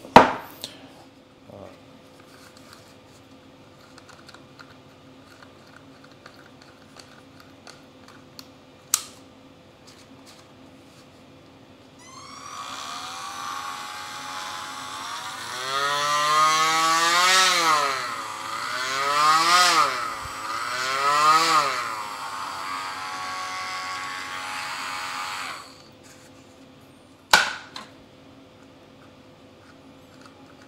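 Handheld rotary tool spinning a fitted accessory bit. Its motor whine climbs in pitch and falls back about three times as the speed is turned up and down, then runs steadily for a few seconds and cuts off. A couple of light handling clicks come before it.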